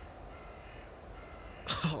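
A crow cawing a few times in the background, faint and short. Near the end a brief, louder call overlaps a person's spoken "Oh".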